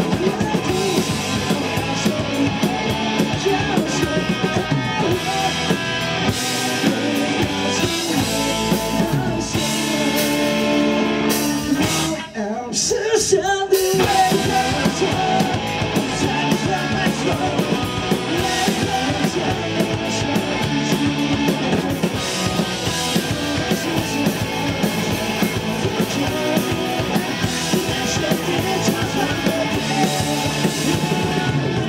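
Live rock band playing loud, with electric guitars and a drum kit. About twelve seconds in the band drops out briefly, then comes back in at full volume.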